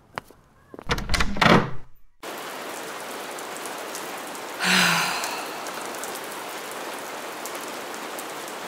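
A footstep, then a glass entrance door being pushed open with a loud clatter of thunks. Then steady rain begins abruptly and goes on, with one louder swell about halfway through.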